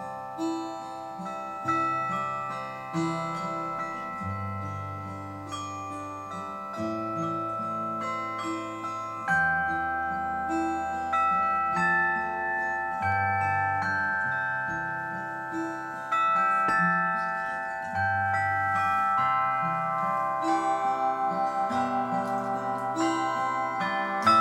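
Slow instrumental music: a set of tuned plates hung on a frame, struck one note at a time with a mallet, each note ringing on, with a classical guitar playing along. Near the end the notes turn into a fast pulsing tremolo.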